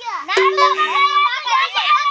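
Children's voices, loud and high-pitched, talking over one another, with a brief steady low tone under them in the first second.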